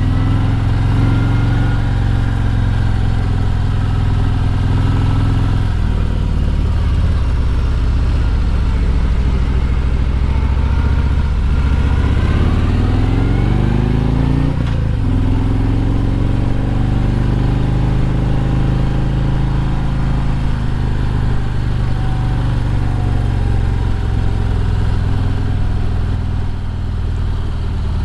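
Harley-Davidson Road Glide's V-twin engine running under way on the road. The revs climb, drop briefly about halfway through, then pick up again.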